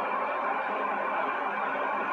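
Steady background hiss with a faint hum and a few soft held tones, level throughout.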